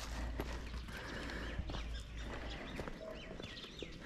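Footsteps on a dirt-and-stone path, irregular soft knocks of walking, with a low rumble in the first half and a few faint high chirps in the second half.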